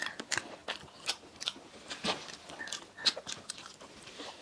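Close-miked chewing of soft cream-filled donuts by two people: irregular mouth clicks and smacks, several a second.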